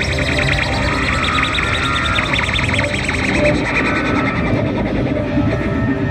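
Electric guitars played live through effects, with a low part underneath and a high lead line chopped into a fast stutter of about ten pulses a second.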